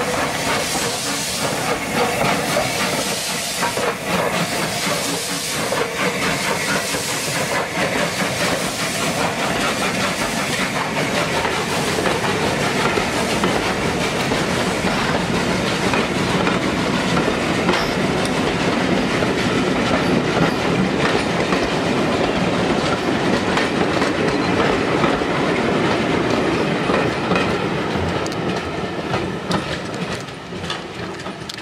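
A steam-hauled train of passenger coaches running past, its wheels clicking over the rail joints. In the first seconds there are sharper beats and steam from the locomotive, and the sound falls away a little near the end as the train moves off.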